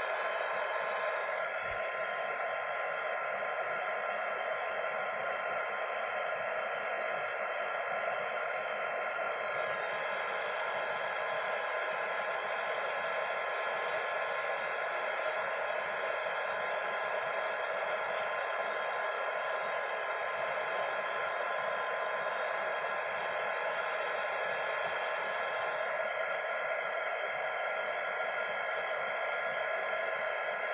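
Craft heat tool (embossing heat gun) running steadily: a constant rush of hot air with a steady motor whine. It is heat-setting a puffy texture medium on a chipboard piece.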